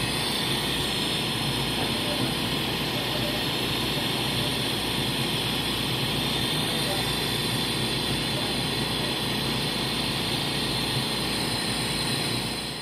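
Steady rushing hiss of air inside a hyperbaric oxygen chamber, unchanging throughout.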